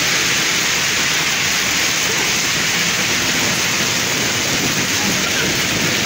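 Heavy rain pouring steadily onto a wet paved street and sidewalk, a dense, even hiss that does not let up.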